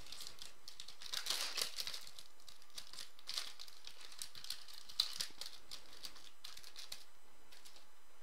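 Stiff trading cards from a 2015 Panini Prizm Collegiate Draft Picks pack handled and shuffled by hand: a burst of light rustling and crinkling about a second in, then scattered soft clicks and taps as the cards are squared up, the sharpest about five seconds in.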